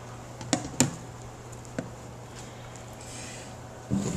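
Three short, sharp clicks and knocks as a stainless-steel gas booster tank is hooked onto the side of a flame-polishing machine's metal housing, about half a second in, just under a second in and near two seconds, over a low steady hum.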